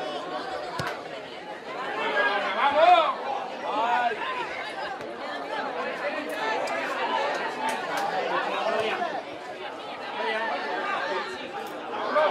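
Indistinct chatter and calls of many voices around a football pitch during open play, with a few brief sharp knocks.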